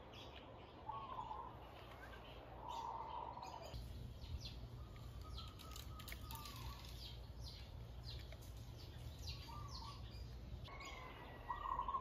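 Faint bird calls: short chirps every few seconds over a quiet, steady outdoor background.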